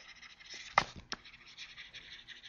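Pen stylus scratching across a writing tablet as a word is handwritten, with two sharp ticks of the pen tip about a second in.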